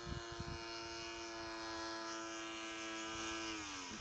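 Motor of a radio-controlled model P-51 Mustang running steadily on partial power during a powered landing approach, its pitch dropping slightly near the end as the throttle comes back for touchdown.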